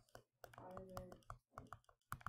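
Faint, irregular clicks and taps of a stylus on a tablet screen during handwriting, about a dozen in two seconds, with a faint voice in the background a little before the middle.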